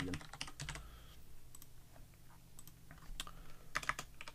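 Typing on a computer keyboard: scattered keystrokes, sparse in the middle, then a quick run of keys near the end.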